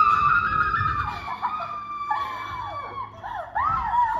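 Girls shrieking with excitement as they run together and hug: one long high shriek, then several shorter squeals that rise and fall and overlap near the end.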